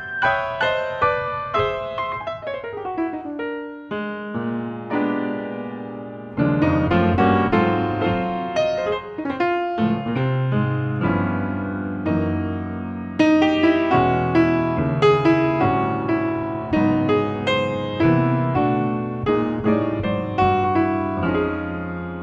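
Grand piano playing jazz: a falling run of chords in the first few seconds, then a fuller, louder passage from about six seconds in, swelling again about halfway through.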